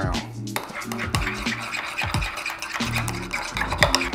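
A metal spoon stirring a thick mayonnaise-based sauce in a glass bowl, over background music with a steady beat.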